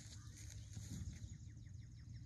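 Faint birdsong outdoors: a quick run of short, falling chirps, over a low steady rumble.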